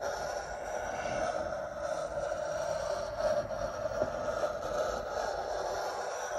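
Pencil lead of a drawing compass scraping on drawing paper as it is swung round to draw a 3 cm radius circle. It starts abruptly and makes one continuous, steady scratch.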